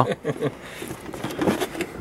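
A lull between talk, with only faint, brief murmured voices.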